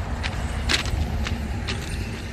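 A semi-trailer truck passing on the highway, its engine and tyres giving a steady low rumble. Several sharp, irregular clicks sit over the rumble, the loudest about three-quarters of a second in.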